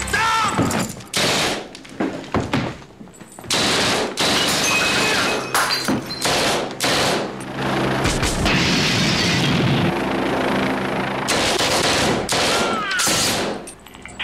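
Automatic gunfire from a film soundtrack: submachine guns firing in long, rapid, near-continuous volleys, broken by a few short gaps.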